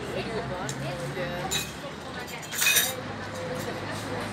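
Indistinct conversation in a café with clinking tableware, and a brief louder clatter a little over halfway through.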